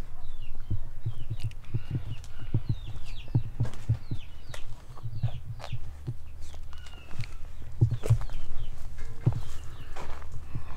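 Footsteps and low thumps from walking along a dirt garden path, with small birds chirping now and then in the background.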